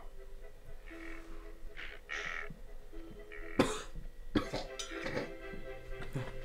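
A man coughing, with a couple of sharp coughs about halfway through, after drawing a hit from a glass bong. Quiet background music with held notes runs underneath.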